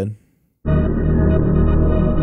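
Logic Pro X's Alchemy synthesizer playing a layered soundscape patch as sustained chords: a dense, steady synth pad that comes in abruptly a little over half a second in.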